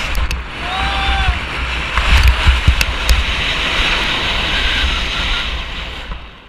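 Skis hissing over snow at speed, with wind buffeting the camera microphone in a steady low rumble and scattered clicks. About a second in, a short pitched tone rises and falls.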